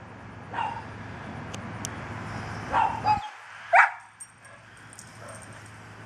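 A dog barking at its ball, three separate barks a second or two apart, the last the loudest.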